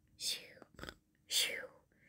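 A person imitating snoring with whispered breaths: two breathy exhales, each falling in pitch, about a second apart, with a soft click between them.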